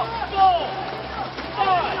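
Two short shouted calls from a voice, one about half a second in and one near the end, over steady arena background noise.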